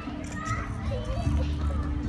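Children's voices calling and playing in the background, over a steady low hum.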